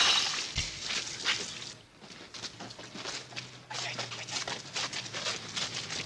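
Scuffle of a fistfight: irregular knocks, scrapes and rustling of bodies and clothing, loudest in the first second.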